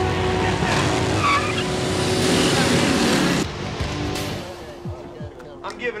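A car accelerating hard and speeding off with its tyres squealing, loud for about three and a half seconds, then cutting off abruptly. Quieter dramatic background music follows.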